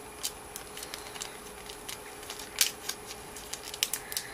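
Scattered small clicks and plastic crackles as a makeup brush is opened and slid out of its clear plastic sleeve, the loudest click about two and a half seconds in.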